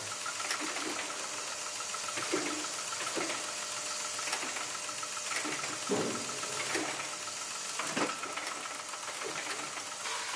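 Automatic riveting machine running with a steady mechanical hum, setting rivets to fix a steel mounting bracket onto a sheet-metal ceiling-fan blade. Several short, sharp clacks come at irregular intervals through the run.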